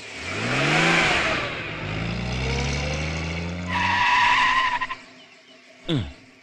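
Film sound of an open jeep: the engine revs up with a burst of tyre skid noise, then runs at a steady note, and a high tyre squeal lasts about a second a little after the middle. A short, sharp falling whoosh comes near the end.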